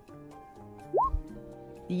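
Soft background music with sustained tones. About a second in comes a single short rising 'plop' blip, like an app sound effect.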